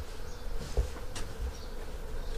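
A faint, steady buzzing hum, with a low rumble on the microphone and a couple of light clicks.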